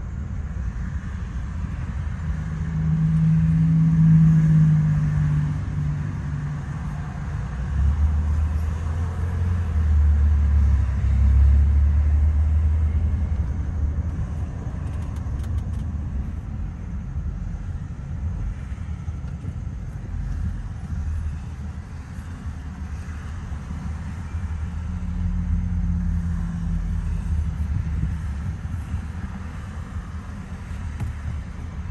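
Road and engine rumble inside a moving car's cabin at highway speed, swelling louder a few times.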